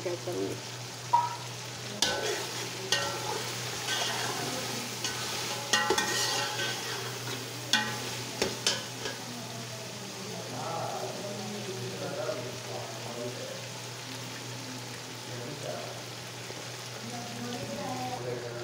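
Beef masala sizzling in a metal pot while a metal spatula stirs and turns it, with scrapes and sharp clinks against the pot, most of them in the first half.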